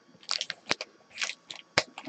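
Foil-wrapped trading card packs crinkling as they are handled, in a handful of short, sharp crackles.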